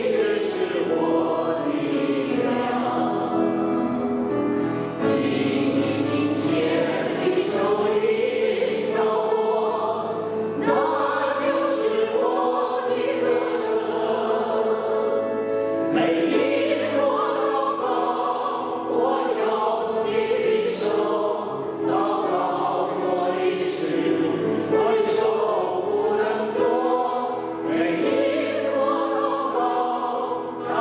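A small group of voices singing a hymn together, with sustained notes that change about once a second, continuing without a break.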